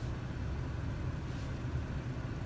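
Steady low hum of an idling Honda Ridgeline's engine, heard from inside the cab.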